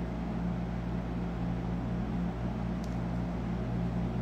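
Steady background hum: a low drone with an even hiss, unchanging throughout.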